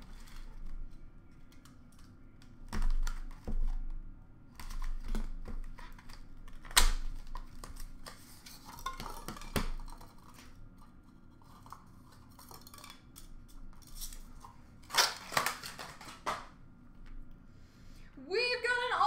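Trading cards and plastic card holders being handled: scattered clicks and light knocks with short bursts of rustling, the sharpest click about seven seconds in and the loudest rustling a few seconds before the end.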